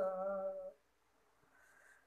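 A woman singing a Tagin gospel song unaccompanied holds the last note of a line for under a second, then a short pause before the next line.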